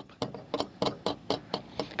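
Loose steel ball mount knocking in the van's trailer-hitch receiver as it is wiggled by hand: a string of light metal clicks, about four a second. This is the play in the receiver that makes the rattle over bumps.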